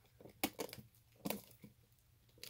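Faint crinkling and crackling of plastic shrink-wrap on a small tin, a few short crackles as fingers pick at the tight wrap to tear it open.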